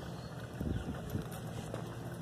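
Wind rumbling on a phone's microphone outdoors, uneven and low, with a few soft thuds about half a second to a second in.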